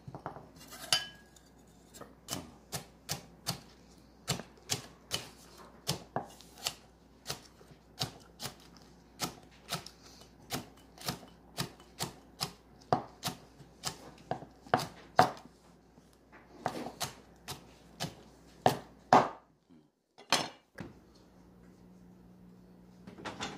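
Cleaver chopping cabbage leaves on a bamboo cutting board: steady sharp knocks about two a second that stop a few seconds before the end, with one last knock after a short pause. Near the start, a brief scrape and clink as chopped garlic is pushed into a ceramic bowl.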